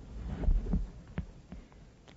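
Low thuds in the first second, followed by a few sharp short clicks.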